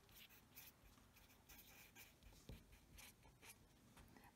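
Faint scratching of a marker pen writing on paper, in short irregular strokes.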